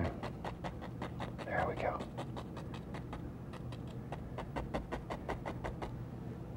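A stiff bristle brush tapping on a stretched oil-painting canvas in a quick even rhythm, about five soft taps a second.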